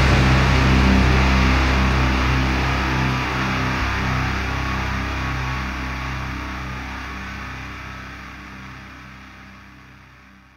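The end of a death metal song: a final held chord on distorted guitars and bass rings out and fades steadily toward silence.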